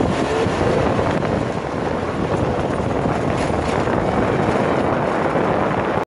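Steady, loud rushing rumble of wind and motion noise on the microphone, with no distinct hoofbeats standing out.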